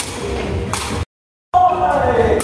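Sepak takraw play echoing in a sports hall: a sharp thud about three quarters of a second in, then the sound cuts out completely for half a second at an edit, and players' voices resume.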